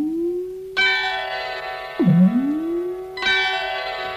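Instrumental interlude of a Malayalam film song with no singing. Twice, a tone dips and then glides smoothly up to a held note, and a sustained chord follows each glide.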